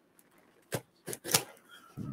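A blade cutting through packing tape on a cardboard shipping box: a few short, sharp strokes about a second in.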